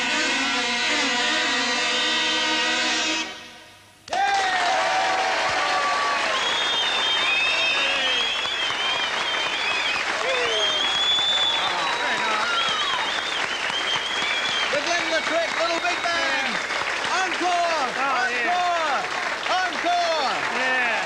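A kazoo band's final held chord fades out about three seconds in. A studio audience then breaks into loud applause and cheering, with many shouts and whoops over the clapping.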